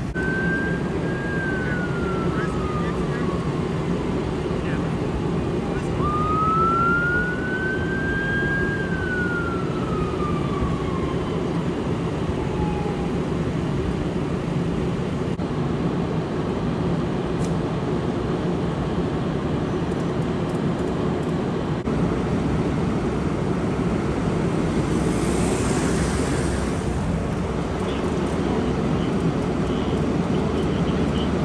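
An emergency-vehicle siren wailing: it holds high and slides down, rises again about six seconds in, then falls slowly and dies away. Under it runs a steady low rumble of idling emergency vehicles, and a brief hiss comes near the end.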